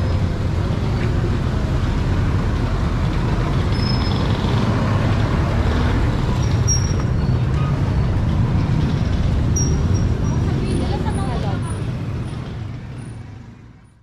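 Street traffic: a steady low rumble of passing vehicle engines, with voices of people around mixed in. The sound fades out over the last two seconds or so.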